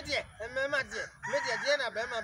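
A rooster crows once, a long held call starting a little past halfway through, over people talking.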